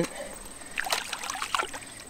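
Small splashes and sloshing of shallow stream water about a second in, as a trout is lowered by hand back into the water. A steady high cricket trill runs underneath.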